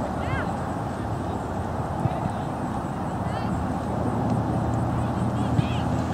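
Outdoor soccer-field ambience: a steady low rumble with a few faint, distant shouts from players or spectators on the field.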